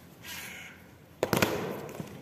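A single loud, echoing stamp of a soldier's boot on stone paving about a second in. It is one step of an honour guard's slow ceremonial march, which puts about two and a half seconds between stamps.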